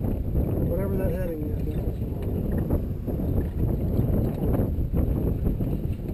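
Steady wind noise on the microphone over the rush of water along the hull of a Tayana sailboat under sail. A brief voice sounds about a second in.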